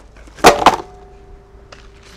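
Plastic wrap crinkling over a metal sheet pan, with one sharp knock about half a second in, followed by a faint steady ringing tone for about a second.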